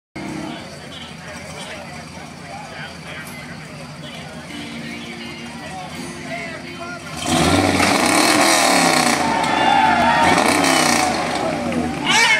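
Lifted square-body pickup truck's engine running, then revving hard from about seven seconds in as it pulls the weight sled, with the crowd shouting. The pull ends with a broken driveshaft.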